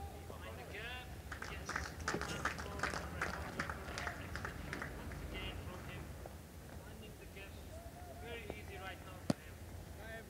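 Distant players' voices calling and shouting on the field, with a patter of scattered claps from about 1.5 to 4 s in and a single sharp knock near the end.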